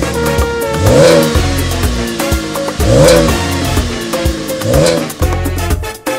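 Chevrolet Camaro engine revved three times, each rev a quick rise and fall in pitch, with music playing underneath.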